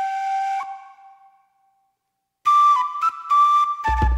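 Intro music led by a flute-like wind instrument: a held note that rises a step and fades away, a short pause, then a new phrase of held notes about two and a half seconds in, with a low drum beat coming in near the end.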